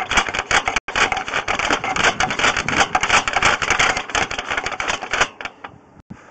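Rapid, irregular clicking and rattling of a sewer inspection camera's push cable being fed down the line, with a brief break about a second in, stopping shortly before the end.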